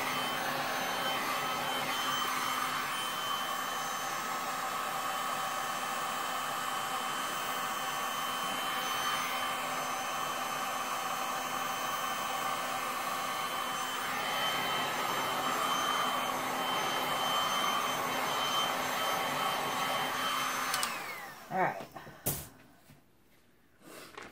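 Electric heat gun blowing steadily, its fan giving a steady whine, then switched off about 21 seconds in and winding down. A single sharp click follows shortly after.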